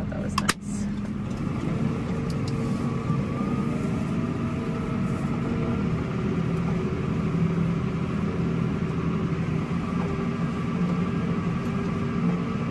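Tractor engine running steadily, heard from inside the cab, with a couple of sharp clicks about half a second in.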